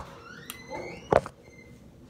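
Handling noise: a short squeak rising in pitch, then a single sharp click about a second in.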